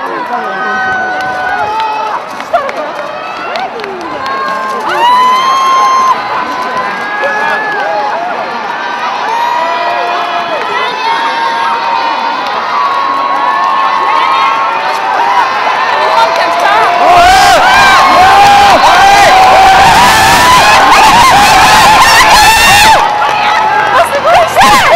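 Large roadside crowd cheering, many voices shouting and calling out at once, growing steadily louder. In the last several seconds a loud, even rush of noise joins the cheering.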